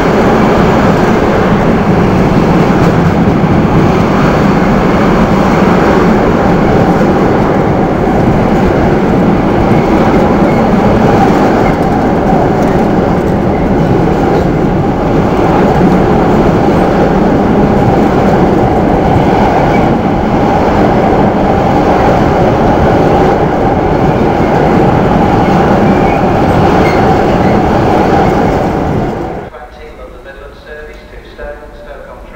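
Freight train wagons rolling past close by on the adjacent track, a loud steady rolling noise of wheels on rail that falls away sharply near the end.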